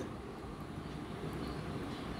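Steady low background rumble, room noise with no distinct events.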